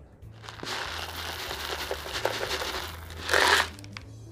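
Small gravel being poured from a plastic bag into a tub of cactus potting mix: the bag crinkles while the pebbles fall in with many small clicks, and a louder rush comes near the end as the last of it is shaken out.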